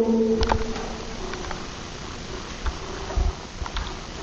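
A low hum fading out in the first half second, then a few faint, scattered clicks of buttons being pressed on a control panel.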